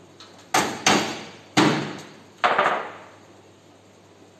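Four sharp blows struck on a washing machine's sheet-metal cabinet and drum assembly, each ringing briefly, the last one a quick double hit.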